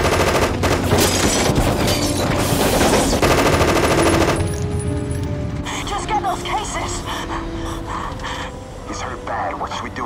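Sustained rapid automatic gunfire from a handheld automatic gun, stopping about four and a half seconds in. Shouted dialogue and film score follow over a low engine drone.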